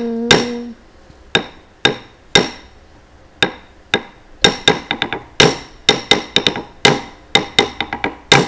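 Wooden stick (thattukazhi) beating a wooden block (thattu palakai), keeping time for Bharatanatyam dance: a few spaced strokes, then quicker runs of strokes from about halfway in. A held sung note dies away in the first second.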